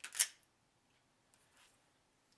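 Brief rustle of fingers pressing and smoothing modelling clay onto a wax hat-brim armature and brushing the paper-covered work board, with a fainter second rustle about a second and a half in.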